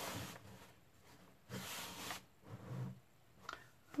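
Faint rubbing and sliding of painted MDF panels being handled and pushed together as a flat-pack cabinet's bottom panel is worked onto its notches. There are three short swishes, then a few light clicks near the end.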